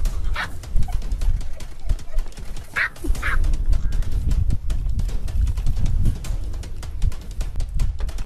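Outdoor field recording dominated by a low rumble with frequent knocks, typical of a safari vehicle and wind on the microphone. Three short, high animal calls sound, one about half a second in and a pair close together about three seconds in.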